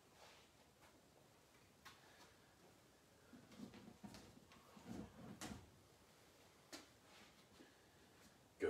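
Near silence in a small room, with a few faint clicks and soft low thumps in the middle as exercise gear is handled.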